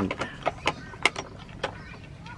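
Irregular sharp metal clicks and knocks, about seven in two seconds, as a bench vise is opened and an aluminium awning pole is taken out of its jaws.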